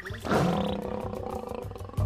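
A big cat's roar used as a sound effect. It starts abruptly about a quarter second in and fades over about a second, over background music with a low, steady beat.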